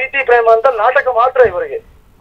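Speech only: one person talking steadily, with a brief pause near the end.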